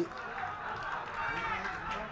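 Several overlapping voices of players and spectators calling out and chattering around a football pitch, fainter than a close voice.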